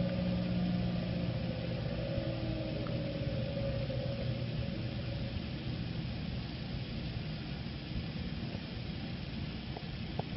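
Electric motor run by an SVX9000 variable frequency drive ramping down to a stop: its hum and whine sink slightly in pitch and fade away over the first few seconds, leaving a steady hiss.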